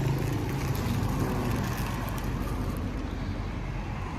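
Street traffic noise: a passing motorcycle's engine hum fades away in the first second, leaving a steady rush of road traffic.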